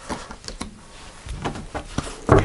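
Tarot cards being handled and laid down on a cloth-covered table: a run of soft clicks and taps from the card stock, several in quick succession.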